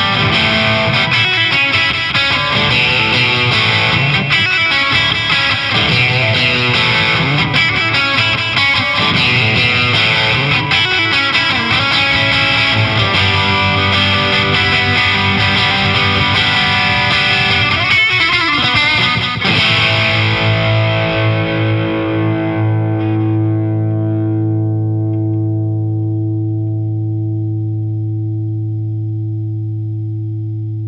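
Fender Stratocaster played through an MXR Classic Distortion pedal set low (distortion at nine o'clock) into a Marshall DSL100HR amp: a lightly distorted electric guitar riff that sounds like an overdrive. About twenty seconds in, a last chord is left to ring and slowly fades.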